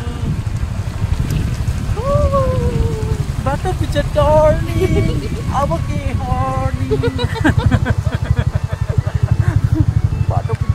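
Wind buffeting the phone microphone on a moving motorcycle, a heavy choppy rumble with the bike's running drone underneath, growing more gusty in the last few seconds. A person's voice is heard over it.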